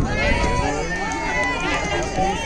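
Indistinct chatter of several overlapping voices, with no one clear speaker, over a low rumble of wind on the microphone.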